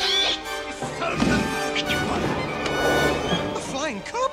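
Orchestral cartoon score with action sound effects: crashes and whacks near the start and again about a second in, and a short gliding cry near the end.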